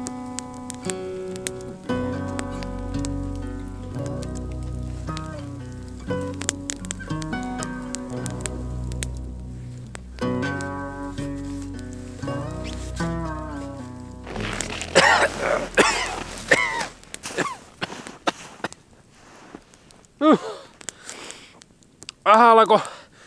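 Background music: a plucked melody over a bass line, stopping about fifteen seconds in. A few short, loud sounds follow, with quieter gaps between them.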